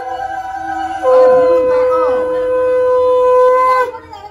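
Conch shell (shankha) blown in a long, steady, horn-like note. It drops off briefly during the first second, is held for nearly three seconds, and cuts off just before the end.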